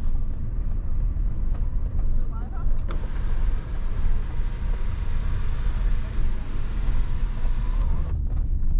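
Nissan Patrol's 5.6-litre petrol V8 heard from inside the cabin while driving: a steady low engine and road rumble. A broad hiss of tyre and wind noise grows about three seconds in.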